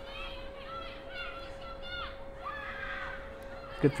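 Faint, high-pitched voices calling and shouting at a distance across an outdoor football pitch, under a thin steady hum.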